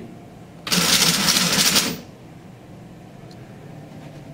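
Rubik's Cube solving robot's stepper motors turning the cube faces through a solve: a loud, dense rapid rattle of clicks that starts under a second in and lasts just over a second.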